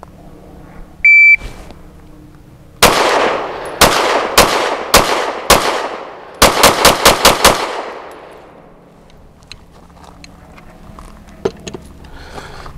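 A shot timer's start beep, then eleven shots from an Arex Delta Gen 2 M OR 9mm pistol. Five shots come spread over about three seconds, then six rapid shots about a fifth of a second apart, each with a short ringing tail.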